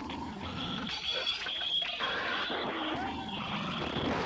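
Experimental tape-collage sound: a dense, shifting layer of noises with short wavering pitch glides, over a thin high steady tone that fades out about halfway through.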